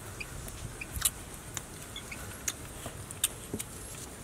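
Irregular light clicks and taps from hands and a cleaver handling raw meat and herbs at a wooden cutting board, the loudest about a second in and just after three seconds, over a low steady background.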